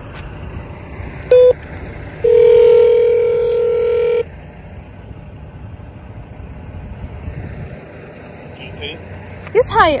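Entry-gate intercom call box: a short beep about a second in as the call button is pressed, then a steady ringing tone held for about two seconds while the call goes through.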